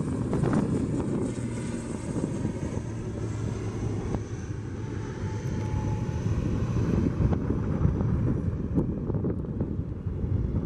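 ATR twin-turboprop at takeoff power as it lifts off and climbs away: a steady low propeller drone with a faint high turbine whine that slowly falls in pitch, with some wind on the microphone.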